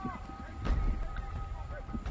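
Faint shouting of players and coaches on a football practice field, with one thud about a third of the way in and a faint steady two-note tone underneath.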